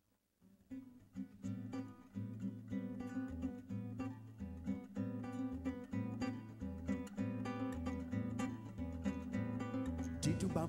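Live band opening a Latin jazz tune: acoustic guitar strummed in a steady rhythm over changing low bass notes, starting about half a second in.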